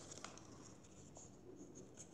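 Faint scratching of a pencil on paper as a drawing is made, with a few small ticks.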